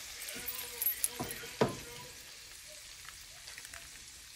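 Shrimp sizzling in a frying pan, a steady hiss, with a few sharp clicks in the first two seconds as a slotted spatula knocks against the pan.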